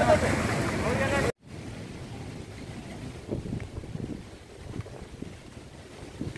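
Repeated shouting voices over wind and surf, cut off sharply about a second in. After a brief dropout comes a quieter rumble of wind on the microphone and breaking waves, with a few faint thumps.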